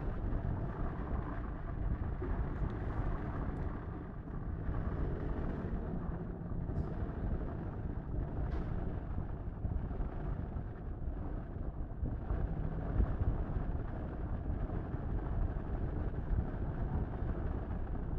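Steady low background rumble with a few faint clicks.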